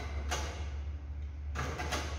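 Brief scraping knocks as tempered glass sheets and a clamp bar are handled on a steel A-frame glass rack, once about a third of a second in and again near the end, over a steady low rumble.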